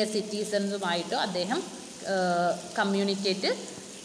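A person speaking in short phrases with brief pauses, over a faint steady hiss.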